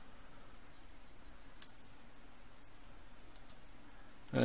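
A few sharp clicks of a computer mouse, spaced out over a few seconds, against a faint steady background hiss.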